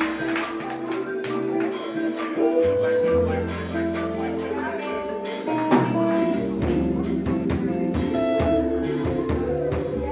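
Live band playing a slow R&B groove, with held chords and drums keeping time.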